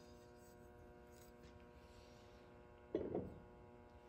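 Faint steady electrical hum, with one short knock about three seconds in as a carnival glass plate is set down on a wooden table.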